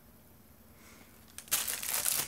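Clear plastic kit packaging crinkling as it is handled and put down. It starts with a couple of clicks about one and a half seconds in, after a quiet start.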